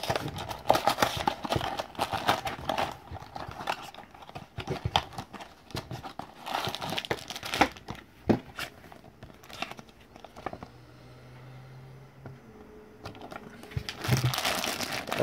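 A small cardboard box being opened by hand and the plastic packaging inside crinkling and rustling: busy for the first eight or nine seconds, then quieter, sparser handling.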